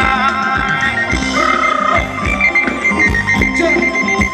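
Thai ramwong dance music from a live band: a steady, even drum beat under long held melodic notes, with the singing pausing between lines.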